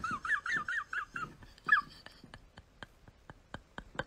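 A dog whining in a high, wavering pitch that fades out a little under two seconds in, followed by faint, regular ticks about four a second.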